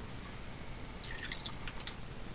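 Faint dripping of strained chicken bone broth falling through a mesh strainer and funnel into a glass carafe, with a few light drip sounds about a second in.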